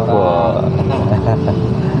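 A man's voice talking, partly untranscribed, with a held drawn-out vowel in the middle, over a steady low background rumble.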